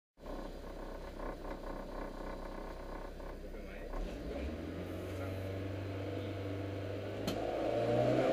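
Mitsubishi Mirage rally car's four-cylinder engine idling, heard from inside the cabin; about four seconds in the revs rise and are held steady, the car waiting at the stage start ready to launch. A short sharp click comes shortly before the end.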